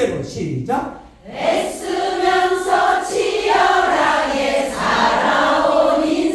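A large group of women singing a trot melody line together in unison, without accompaniment once the backing track drops out at the start, with a brief pause about a second in.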